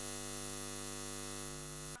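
Steady electrical hum of a neon sign, a buzz with many overtones, stopping abruptly at the end.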